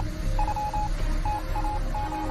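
Electronic intro sound effect: short, high beeps of mixed lengths in irregular groups, like a coded signal, over a low drone.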